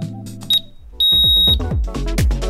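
Interval-timer countdown beeps: a short high beep, then a longer one about a second in, marking the end of the work interval. Under them the background music fades out and a new electronic track with a heavy kick drum starts.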